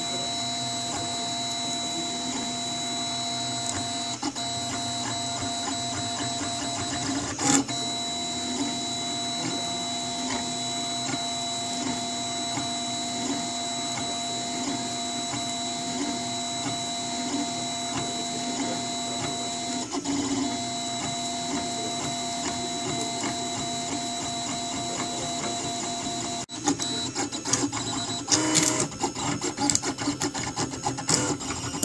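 Printrbot Simple Metal 3D printer printing, its motors giving a steady whine. There is a short click about seven seconds in, and in the last few seconds the sound turns choppy and uneven.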